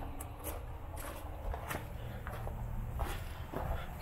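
Footsteps on gravel: soft crunches about every half second over a low, steady rumble.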